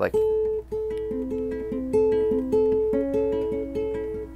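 Nylon-string classical guitar fingerpicked in a darker-sounding repeating pattern of single notes, about three a second, each ringing on under the next.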